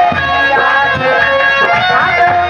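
Live Indian folk stage music: a harmonium plays a held, gently bending melody over repeated hand-drum strokes.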